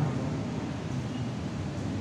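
Steady background hiss of room noise with no voice, between two stretches of the priest's spoken prayer.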